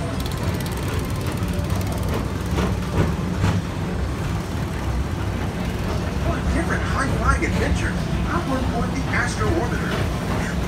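Steady low rumble of a PeopleMover car running along its elevated track, with voices of people below heard more clearly in the second half.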